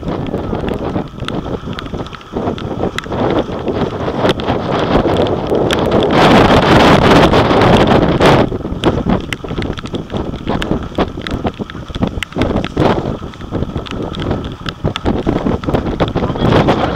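Heavy wind buffeting the microphone on a small aluminium punt under way across open water, with crackling gusts throughout. It is loudest from about six to eight seconds in.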